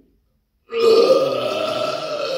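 A man's long, loud burp that starts about two-thirds of a second in and is held unbroken for about two seconds at a fairly steady pitch.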